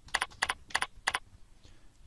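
Computer keyboard: four quick keystrokes in about a second, each a press-and-release click pair, typing the amount 500 and pressing Tab to leave the field.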